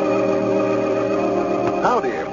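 Organ theme music holding a sustained chord, with a short swooping glide in pitch near the end.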